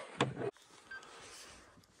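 A brief snatch of a voice, cut off abruptly, then faint steady background hiss with no clear source.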